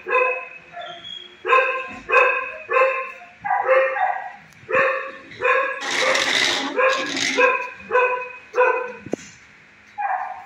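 A dog barking repeatedly in a steady run, about two barks a second, with a louder, harsher stretch around six seconds in; the barking stops about a second before the end.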